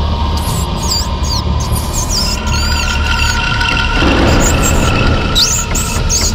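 A mouse squeaking again and again in short, high, bending squeaks over background music with a steady low drone. Near the end there is one quick rising squeak.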